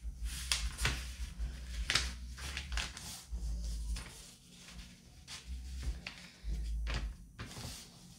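A sheet of paper being folded in half and creased by hand on a wooden table: irregular rustles and scrapes of the paper, with dull bumps from the hands and paper against the tabletop.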